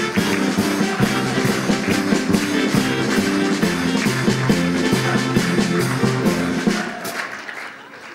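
Live small band of drum kit, double bass and keyboard playing up-tempo walk-on music with a steady beat; the music fades out about seven seconds in.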